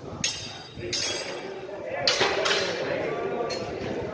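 Singlesticks striking in sparring: a sharp crack about a quarter second in, then further knocks near one second and around two seconds, each ringing on briefly. Voices run underneath.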